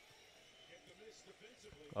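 Faint commentator speech over low arena crowd noise from a basketball game broadcast playing quietly.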